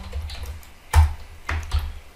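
Computer keyboard being typed on: a handful of separate keystrokes, the loudest about a second in.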